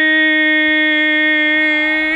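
A man's voice holding one long vowel at a fixed pitch, loud and steady like a sung note, drawn out well past normal speech.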